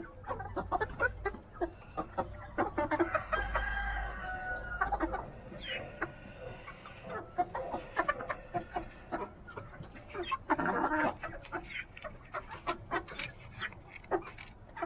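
Rhode Island Red chickens clucking while they feed, with many short sharp clicks and clucks throughout. A longer drawn-out call comes about three to five seconds in, and another burst of calling comes near eleven seconds.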